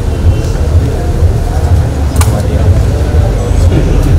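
Loud steady low rumble with faint voices under it and a single sharp click about two seconds in.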